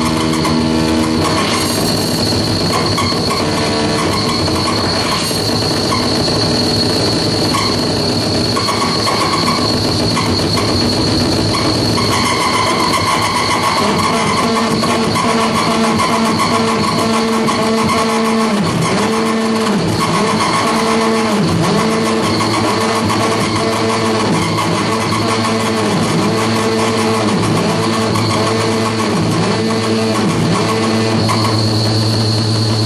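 Loud, dense electronic noise from live-played circuit-bent hardware, with a steady high-pitched whine over a harsh, screeching texture. From about halfway through, a lower warbling tone pattern sets in and dips and returns about every second and a half.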